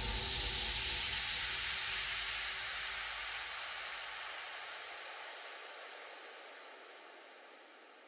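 Closing noise sweep of an electronic dance track: a hiss that slides downward in pitch and fades out steadily, the last of the bass dying away about two thirds of the way through.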